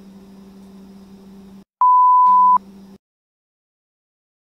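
A single loud, steady electronic beep, a pure tone of about 1 kHz lasting under a second, that starts and stops abruptly with a click. It is an edited-in bleep tone laid over faint room hum.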